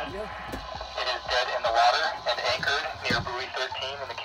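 A voice talking over a marine VHF radio, the speech thin and cut off at the top as it comes through the radio.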